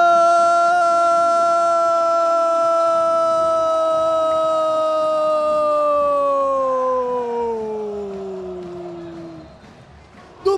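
A single man's voice holding one long, high, drawn-out shout, the kind of held "gooool" cry made when a goal is scored. It stays on one pitch for several seconds, then sinks in pitch and fades away near the end as the breath runs out.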